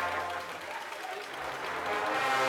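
Brass band of a Holy Week procession playing a funeral march, in a softer stretch between louder sustained chords, over a steady wash of crowd noise.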